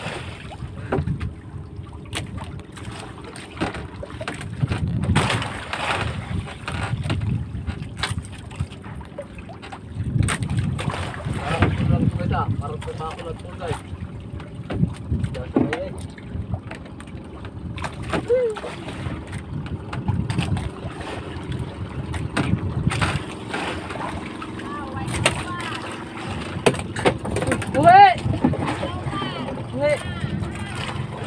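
Wind buffeting the microphone and water slapping against the hull of a small wooden outrigger fishing boat at sea, in uneven gusts.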